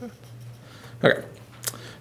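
A pause in a man's talk, with a low steady hum underneath; he says a short "okay" about a second in, and a single sharp click follows soon after.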